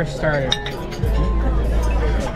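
Background music with a heavy, steady bass line, and a metal fork clinking once against a small ceramic bowl about half a second in.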